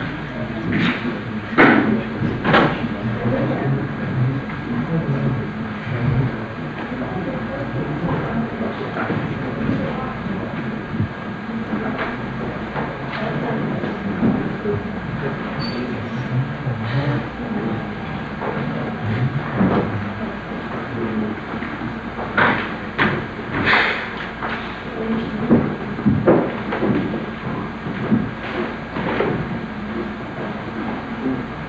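An indistinct murmur of voices with scattered knocks and clicks, a few about a second in and a cluster about two-thirds of the way through.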